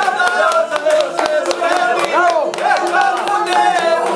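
Several people talking and calling out at once over folk string music, a long-necked plucked string instrument strummed in quick, even strokes.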